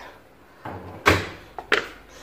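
Kitchen knocks as a red plastic colander is handled at a stone counter: a dull bump, then a sharp loud knock about a second in, and a smaller knock near the end.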